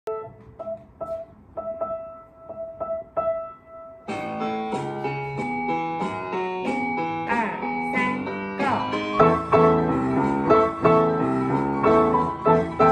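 Piano: a simple melody played one note at a time, then about four seconds in a second player joins with fuller chords and low bass notes, the two playing together as a four-hands duet.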